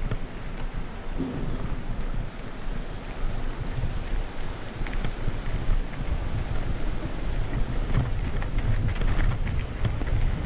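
Wind buffeting the microphone of a camera moving fast along a dirt trail: a steady low rumble with scattered small clicks and rattles, mostly in the second half.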